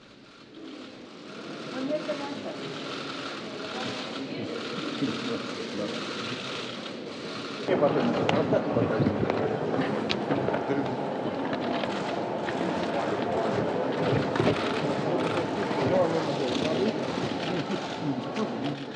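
Rapid clicking of many camera shutters over the murmur of a crowded room. About eight seconds in, the sound cuts to a louder, echoing hall full of chatter and clatter.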